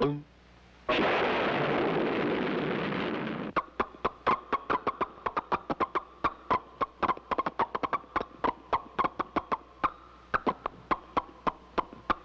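Cartoon sound effects: a rushing hiss lasting about two and a half seconds as Roger Ramjet's proton pill takes effect, then a rapid run of tennis-ball hits, about six sharp pops a second, over a faint steady tone.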